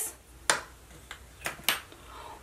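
A few sharp clicks and taps of small plastic makeup products being handled and set down: a brow pencil swapped for another brow product, with the loudest click about half a second in and two quick ones near the end.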